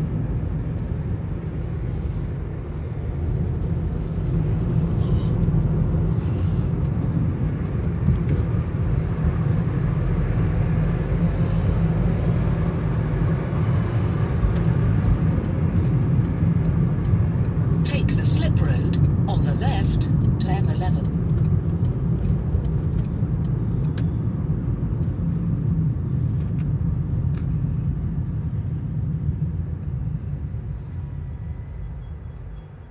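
Road and engine noise heard from inside a moving car: a steady low rumble, with a few brief higher sounds about eighteen seconds in.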